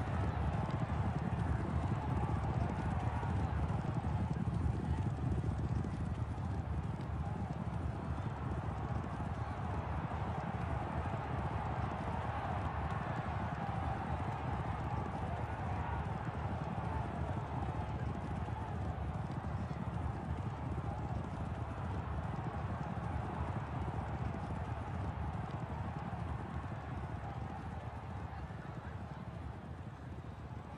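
Racehorse galloping on a dirt track, a steady run of hoofbeats that slowly fades over the last few seconds.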